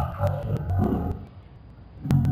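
A man speaking, with a pause of about a second near the end.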